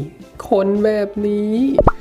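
A man's drawn-out voice over background music, ending in a short, sharply rising pop-like sound near the end.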